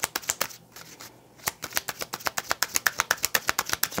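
Tarot cards being shuffled by hand: a rapid run of crisp card clicks, with a short lull about half a second in before the shuffling picks up again.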